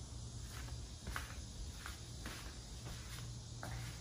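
Faint footsteps on a hard tiled floor, about two a second, over a faint steady low hum.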